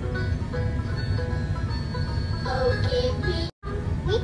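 Instrumental passage of a children's TV song, with held notes over a steady low rumble. The sound cuts out completely for a split second near the end.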